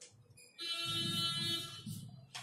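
Whiteboard marker squeaking against the board: one steady, high-pitched squeal lasting just over a second, starting about half a second in.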